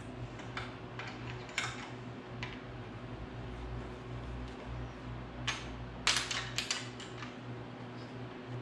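Small metal clicks and taps of a stainless bolt, washers and acorn nut being fitted and snugged up with a hand screwdriver, with a quick cluster of sharp clicks about five and a half to seven seconds in, over a steady low hum.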